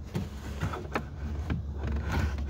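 A few light clicks and knocks as plastic door trim and a screwdriver are handled, over a low steady rumble.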